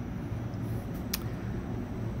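Steady low hum of an industrial greenhouse fan running continuously, with one sharp click a little over a second in.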